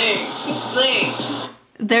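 Voices over background music, cutting off abruptly about a second and a half in; a woman starts speaking just before the end.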